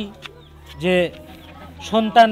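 Conversational speech in a face-to-face exchange: one short spoken word about a second in, and another starting near the end, over a low steady hum.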